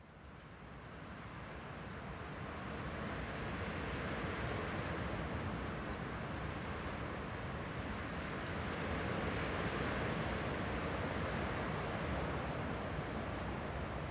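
Steady rushing ambient noise, fading in over the first few seconds and then holding steady.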